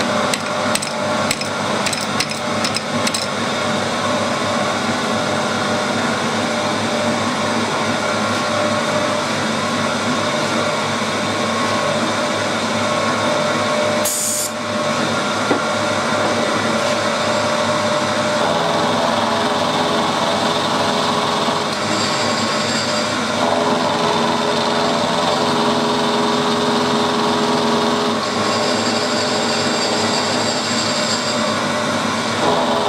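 Milling machine end mill taking a facing cut on small metal parts clamped in a vise, a steady metal-cutting sound. The cut takes 1.6 mm off each face. Sharp clicks come in the first few seconds, and a brief high hiss about halfway through.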